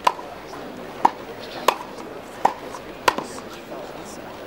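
Tennis ball struck by rackets in a quick practice rally on grass: five sharp pops less than a second apart, ending about three seconds in.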